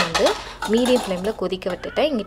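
Metal utensils clinking against a cooking pot, several sharp clinks, over a voice.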